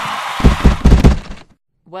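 Cartoon sound effects of soccer balls being kicked: a quick run of heavy low thumps within about a second, over a steady noisy background that cuts off abruptly about a second and a half in.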